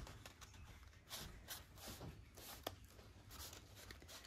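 Near silence with faint rustling of cardstock paper being held and pressed between fingers, and one light tick a little past halfway.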